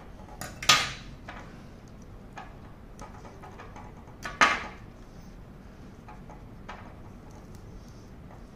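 Two loud, sharp clicks, about 0.7 s and 4.4 s in, from scissors cutting at an e-bike battery's fuse wiring and from handling the plastic fuse holder. Fainter small clicks fall between them.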